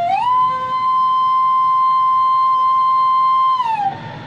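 Bamboo bansuri flute: a note slides up at the start and is held long and steady, then slides down and fades near the end.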